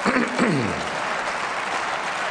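Applause in a large parliamentary chamber: many people clapping steadily, with a man's voice briefly heard over it in the first second.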